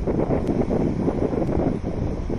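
Gusty wind buffeting the microphone, with small waves breaking on the beach beneath it.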